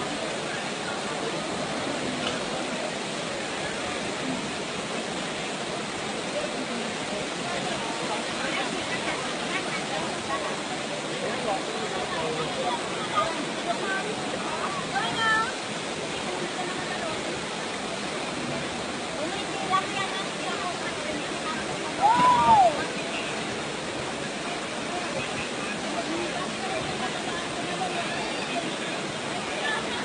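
Steady rush of a waterfall pouring into a rock plunge pool, with faint voices underneath. About two-thirds of the way through, one short, loud call rises and falls in pitch.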